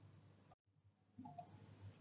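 Mostly near silence, broken by two faint clicks: one about half a second in and another short one near a second and a half in.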